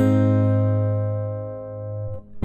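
A guitar chord strummed once and left to ring, dying away slowly over about two seconds.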